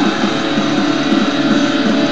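Distorted electric guitar playing a metal riff on an offset-body guitar, loud and continuous with a busy, rhythmic pattern.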